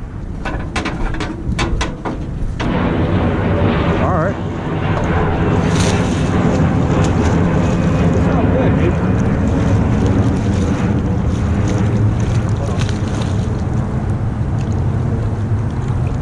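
A few sharp clicks, then, from about two and a half seconds in, a loud steady engine drone mixed with wind noise that carries on unbroken.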